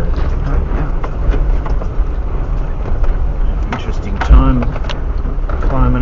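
Four-wheel drive crawling slowly over a rough gravel track, heard from inside the cab: a steady low engine and road rumble with frequent crunches and knocks from stones under the tyres and from the bodywork.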